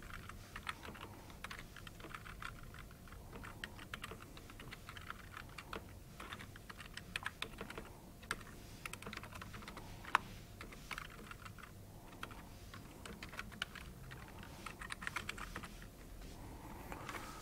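Typing on a computer keyboard: irregular bursts of key clicks with short pauses between them, and one sharper keystroke about ten seconds in.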